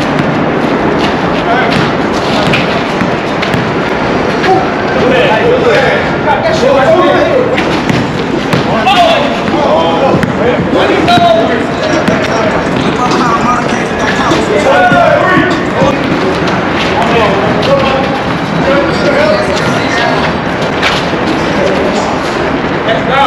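Indistinct voices of players calling and talking during a pickup basketball game, with frequent short thuds of a basketball bouncing on the hard court.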